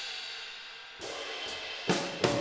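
EZdrummer virtual drum kit playing back: a cymbal rings and fades, then new cymbal and drum hits come about a second in, with the loudest strike near the end. It sounds like any other drum kit.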